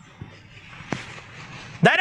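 Rustling and shuffling as a man gets up from a chair and steps forward, with a single sharp knock about a second in. A man's voice starts speaking just before the end.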